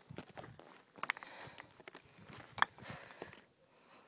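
Footsteps crunching and scuffing on loose rocks and gravel while climbing, with an irregular run of crunches and a sharp clack of stone about two and a half seconds in.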